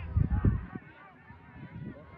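Shouts from players and onlookers as the ball comes into the goalmouth, over outdoor crowd chatter. A loud low rumble sits under the shouts in the first half-second or so.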